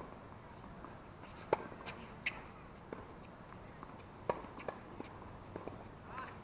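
Faint, sharp pops of tennis balls being struck and bouncing on a hard court, scattered irregularly, the loudest about one and a half seconds in.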